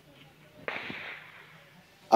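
A single distant gunshot about two-thirds of a second in, a sharp crack whose echo fades over about a second.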